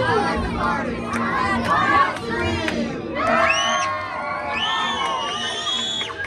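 A crowd of young children shouting and cheering together. About halfway through, their high voices rise in pitch into one long, held shout.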